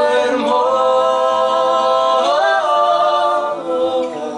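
A man and a woman singing one long held note together. The pitch slides up a little past halfway and comes back down near the end.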